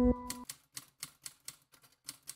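Typing sound effect: a run of separate key clicks, about four a second, as on-screen text is typed out. A held music chord cuts off just before the clicks begin.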